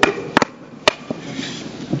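Three sharp knocks, about 0.4 s apart, of a bare hand striking nails in a 6 cm thick wooden board, as nails are driven by hand.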